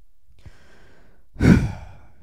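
A man draws a quiet breath, then lets out a heavy, loud sigh about a second and a half in.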